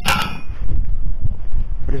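A single metallic clang right at the start, ringing briefly. Steady low rumbling noise on the microphone follows.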